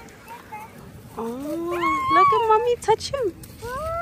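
A goat bleating in a few high calls starting about a second in, one with a quavering pitch, mixed with excited voices.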